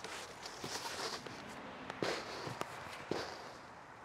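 Scattered light knocks and scuffs from a large cardboard bike box being handled as it is opened.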